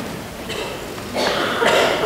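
A person coughing, about a second in.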